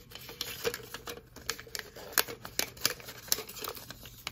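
Folded paper slips rustling and crinkling in a plastic cup as a hand rummages through them and draws one out: a run of irregular sharp crackles and ticks.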